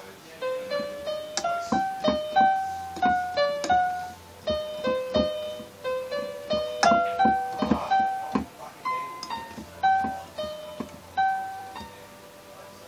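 Electronic keyboard playing a simple, slow melody, mostly one note at a time, about two to three notes a second, stopping near the end.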